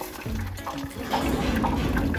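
Homemade waste-oil smudge pot relighting after its lid is opened: a rushing noise of the fire in the pot and stack builds up about a second in as it catches again.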